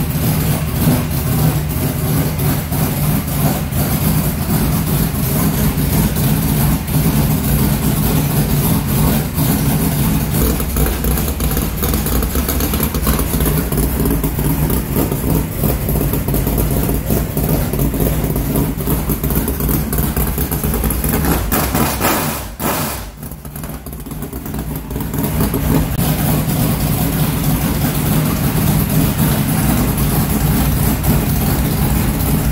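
Carbureted V8 of a modified race car idling loud and steady, with a deep low rumble, just after a cold start out of storage. About 22 seconds in the sound suddenly drops quieter, then builds back up over the next few seconds.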